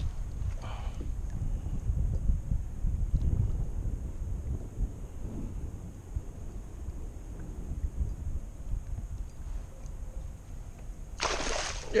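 Wind rumbling on the microphone, rising and falling. Near the end a loud splash as a large blue catfish is scooped into a landing net beside the kayak.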